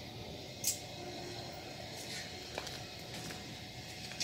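Quiet background noise with one short click about two-thirds of a second in and a fainter tick later.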